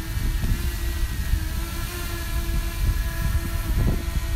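DJI Mini 2 drone hovering, its propellers giving a quiet, steady hum of several even tones, under gusty wind rumble on the microphone.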